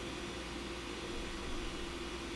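Steady background hiss with a faint low hum: room tone with no distinct event.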